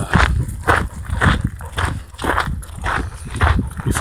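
Footsteps of a hiker walking on a trail, a steady stride of about two steps a second.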